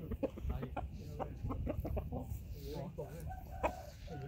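Chickens clucking: a run of short, repeated calls.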